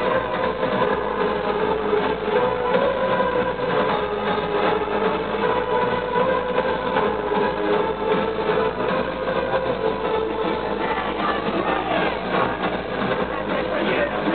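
Loud live electro-industrial music through a concert PA, heard distorted and muffled in an audience recording: sustained synth notes over a dense, noisy wall of sound.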